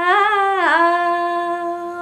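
A woman singing a Nepali song with a single voice. She makes a short melodic turn, then holds one long steady note.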